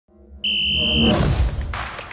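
Intro sound effects: a steady, high electronic tone cuts in about half a second in and holds for over half a second, then gives way to a swelling whoosh over a low rumble.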